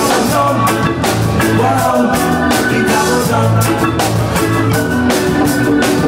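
Live reggae band playing loudly: a singer over drums and a pulsing bass line.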